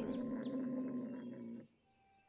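Cartoon stomach-growl sound effect: a low, steady growl lasting about a second and a half that cuts off suddenly.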